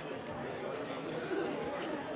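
Low, indistinct chatter of many people talking in a hall, with no single voice standing out.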